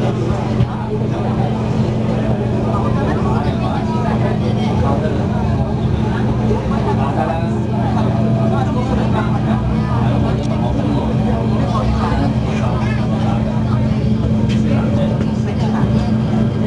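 Inside a moving MTR K-train carriage: a steady low hum with the train's running rumble, and passengers talking over it.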